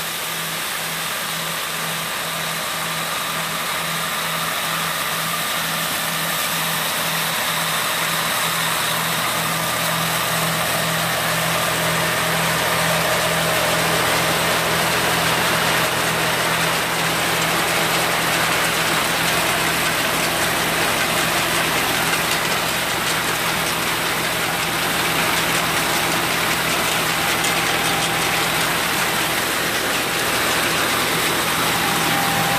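Hasatsan H2050 vacuum hazelnut harvester running while it picks up through three suction hoses. Its engine and suction fan make a steady low drone under a strong airy rush, which grows louder over the first dozen seconds and then holds steady.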